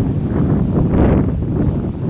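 Wind buffeting the microphone: a loud, unsteady low rumble with no speech over it.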